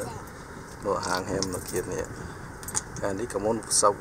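Mostly people talking inside a moving car, with low road and engine noise from the cabin underneath.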